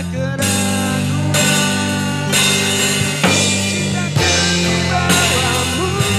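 Live band music led by an electronic keyboard, with a drum-kit beat and guitar-like parts, the chords changing about once a second.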